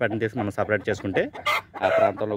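Chickens clucking in a rapid string of short calls, with one sharp squawk about one and a half seconds in.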